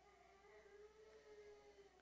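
Near silence: room tone, with a faint, steady pitched whine held for most of the two seconds.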